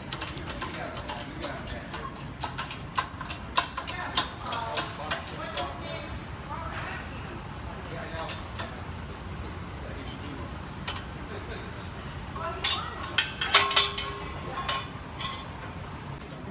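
Metal clicking and clanking from a hydraulic shop press with a bottle jack, as a steel bumper bracket is set and bent in it. The loudest clanks come in a cluster about thirteen to fourteen seconds in, over faint indistinct voices.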